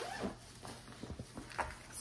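Fabric bags rustling, with a few small clicks and soft knocks, as zippered cloth bags are handled and packed into a felt storage tote.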